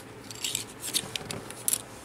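Wooden popsicle sticks handled and laid down on a cutting mat: a few light, scattered clicks and taps of wood on wood and on the mat.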